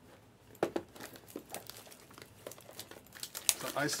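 Plastic wrapping crinkling and crackling in short, irregular bursts and clicks as hands handle shrink-wrapped trading-card boxes.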